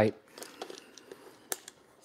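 Faint handling noises from hands working on top of a mini fridge, with a sharp click about one and a half seconds in and a smaller one just after.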